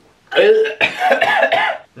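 A young man's disgusted vocal reaction, lasting about a second and a half, to the taste of a sip of black coffee with no sugar or milk.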